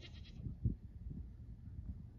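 Goat bleating, a wavering, quavering call that dies away about half a second in, over a low rumble on the microphone with one thump shortly after.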